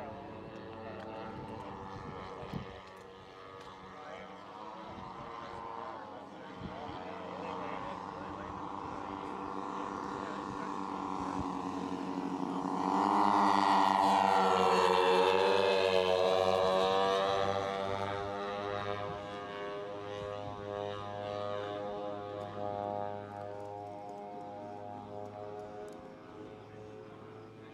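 Engines of a radio-controlled scale OV-1 Mohawk model airplane running in flight. The sound grows louder to a close pass about halfway through, the note bending in pitch as the model goes by, then falls away again.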